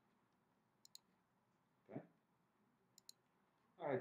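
Two quick double-clicks of a computer mouse, one about a second in and one about three seconds in, over quiet room tone. A short dull sound comes about two seconds in.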